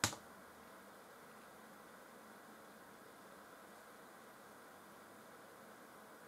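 A single sharp click, as the video link is chosen, then only faint steady hiss of room tone while the video plays muted.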